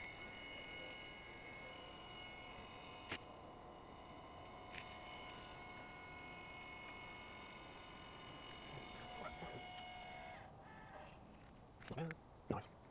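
Celestron NexStar 8SE's motorized go-to mount slewing to a new target: a steady, faint, several-toned electric motor whine that stops about ten and a half seconds in. Two faint clicks sound a few seconds in.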